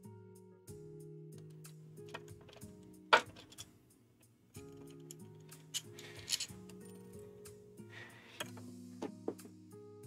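Quiet background music of soft held chords that change every second or so, with small clicks and scrapes from handling 3D-printed plastic parts and a tool, including one sharp click about three seconds in.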